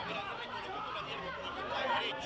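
Several people, men and a boy, shouting and cheering excitedly at once, their voices overlapping with no clear words.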